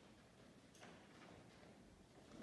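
Near silence: faint room tone with one soft tick about three quarters of a second in.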